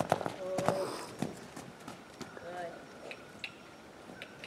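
Hoofbeats of a young warmblood mare trotting on an arena's sand footing: a run of soft, uneven thuds, loudest in the first second and growing fainter as she slows.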